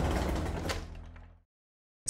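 The tail of a short podcast intro sting: a few sharp hits over sustained ringing tones, fading out over about a second and a half, then silence.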